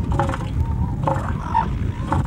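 Northern elephant seal bull calling with its head raised: a low, pulsing call.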